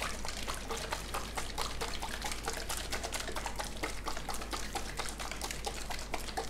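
Thick liquid acrylic pouring paint being poured and dripping, a rapid, irregular run of small wet clicks and drips.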